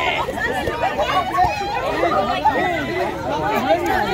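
Crowd chatter: many voices talking and calling out over one another at once.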